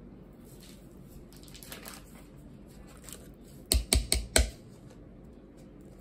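Wire potato masher working mashed potatoes in a stainless steel pot: faint soft squishing, then four quick heavy knocks of the masher against the pot about four seconds in.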